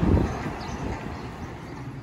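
City street traffic noise, a car driving past, fading away steadily.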